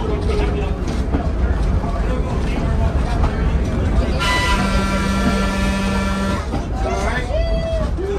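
The horn of Pacific Electric interurban car 717, a 1925 car, blows one steady blast of about two seconds, a little over four seconds in. Under it runs the continuous low rumble of the car travelling along the rails.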